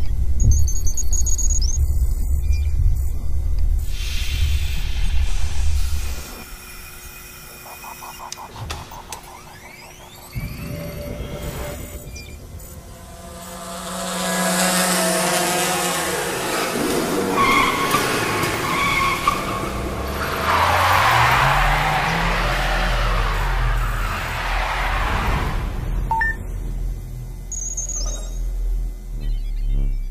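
Produced advertisement soundtrack with no voice. Heavy-bass music runs for the first six seconds, then a quieter stretch follows. From about fourteen seconds a loud run of whooshing effects sets in, with pitches that sweep up and down like a vehicle passing.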